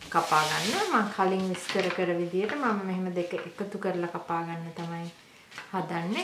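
A woman speaking for about five seconds, with a short hiss at the very start, then a brief pause.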